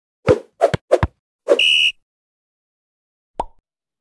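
Intro sound effects: three quick thumps about a third of a second apart, then a fourth with a short high beep-like tone held about half a second, and one more thump near the end.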